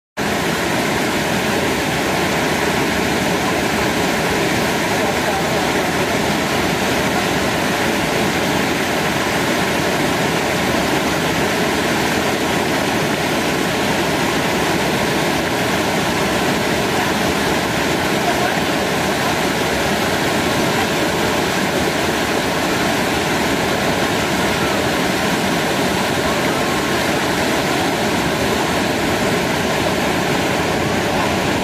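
Waterfall: a loud, steady rush of falling water with no breaks or changes.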